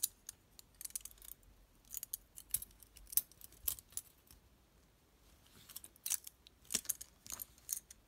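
Metal handles of a balisong-style folding tool clicking and clacking as it is swung open and shut by hand: clusters of sharp clicks, with a lull around the middle.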